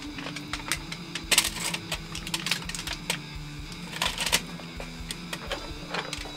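Metal clinks and rattles from the door and latch of a homemade electric heat-treat oven being shut and sealed, with a cluster of clatter about a second and a half in and another about four seconds in, over a faint steady hum.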